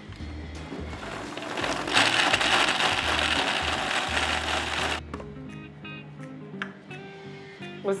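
Countertop blender running, blending a smoothie of soaked fox nuts (makhana), seeds and water, growing louder about two seconds in and cutting off suddenly about five seconds in. Soft background music follows.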